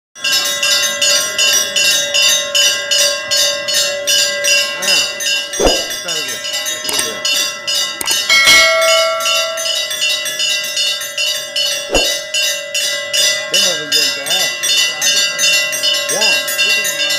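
Metal temple bells rung rapidly and without a break, about four to five even strikes a second over a steady ringing hum, during the arati lamp offering to the idol. A few louder knocks stand out among the strikes.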